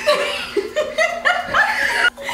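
Two women laughing together; the laughter breaks out suddenly at the start and goes on in short bursts.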